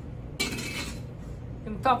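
A short clatter of bar tools and glassware at the bar counter, lasting about half a second, a little under half a second in.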